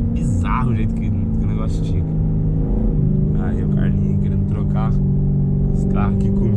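Corvette's V8 engine heard from inside the cabin while driving under light throttle, a steady drone that drops in pitch about three seconds in and then holds.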